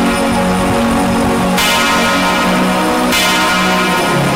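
Altar bells rung in two bursts about a second and a half apart, each ringing out and fading, over devotional music with steady held low tones; a sign of the blessing with the raised monstrance at benediction.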